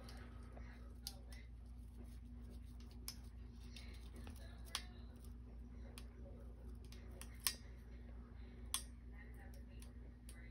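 Long metal feeding tongs clicking faintly now and then as they are held and shifted against the snake: a handful of sharp, isolated ticks over a steady low hum.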